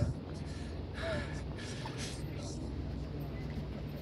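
Outdoor ambience: a steady low hum with a few short, breathy rushes of noise about a second in and again around two seconds.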